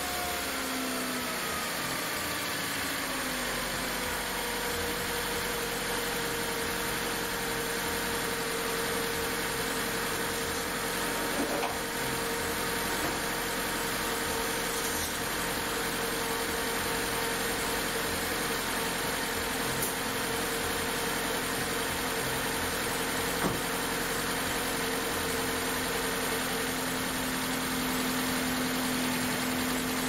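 2006 Mercedes-Benz B-Class (W245) four-cylinder petrol engine just after a cold start, its throttle body and MAP sensor freshly cleaned: the revs drop over the first few seconds, then it settles to a steady, even idle.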